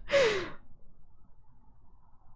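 A person's breathy sigh, about half a second long, its pitch falling as it fades.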